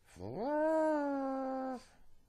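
A single drawn-out voiced cry that rises quickly at the start, then holds and sinks slightly before it stops.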